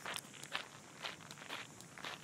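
Footsteps of a person walking at an even pace, about two steps a second.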